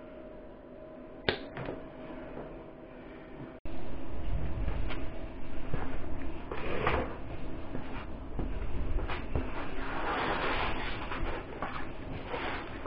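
Hand cable cutters cutting through a heavy 2-gauge copper battery cable, a single sharp snap a little over a second in. Then a run of clunks and rustling as the cable and tools are handled.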